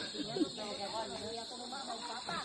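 Voices of a group of people talking and calling out at a distance, over a steady high-pitched hiss.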